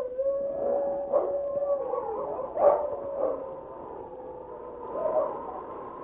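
Radio-drama sound effect of a wolf howling: one long held howl, then shorter wavering howls that grow fainter.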